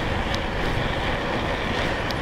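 Steady rush of wind and tyre rumble from an electric bike cruising on an asphalt road at about 21 miles an hour, with a few faint ticks.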